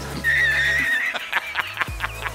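Comedy sound-effect edit: a short, wavering horse-like whinny, then from about a second in a man's rapid, hearty laughter in even bursts.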